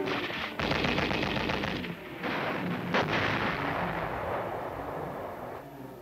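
Machine-gun fire: two rapid strings of shots, then a single heavier bang about halfway through that dies away slowly.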